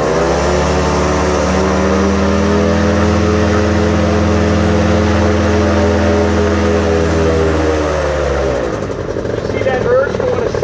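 Paramotor engine throttled up, held at high power for several seconds, then throttled back and dying away about eight and a half seconds in.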